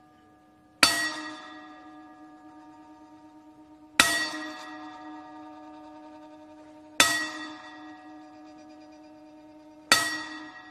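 Ringside gong bell struck four times, about three seconds apart, each clang ringing on and fading before the next: the ten-bell count, a salute to a retiring wrestler.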